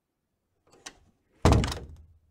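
Door-closing sound effect: a faint click, then a loud, heavy thud about a second and a half in that dies away over half a second.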